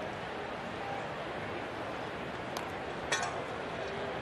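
Steady ballpark crowd murmur, with a sharp knock about three seconds in as a pitched baseball strikes the batter, a fainter click coming just before it.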